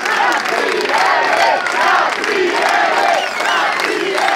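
Large crowd cheering and shouting, many voices at once without a break.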